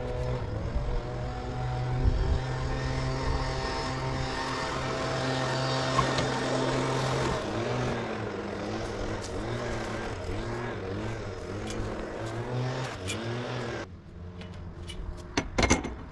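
An engine running with a steady hum, then its pitch rising and falling over and over for several seconds before it cuts off abruptly near the end.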